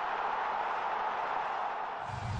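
Steady rushing hiss of noise from a TV show's logo-sting sound effect, with no beat or bass under it, sagging slightly near the end.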